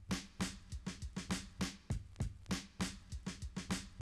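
Sliced 100 bpm breakbeat drum loop playing back from Ableton Simpler: a steady run of kick and snare hits, its 16 slices rearranged into a variation by a MIDI effect rack.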